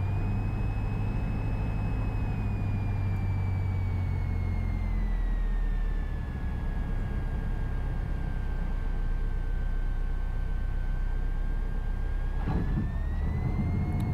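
Piper PA-28-180's four-cylinder Lycoming engine heard in the cockpit as power comes off on short final: a steady hum that drops away about five seconds in, with a thin whine that falls in pitch along with the engine and rises again shortly before touchdown.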